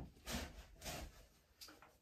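Faint, soft noises of a barefoot man shifting his weight and feet on a carpeted floor as he pushes up out of a low stretch: a small click at the start, then two short, soft swells of sound.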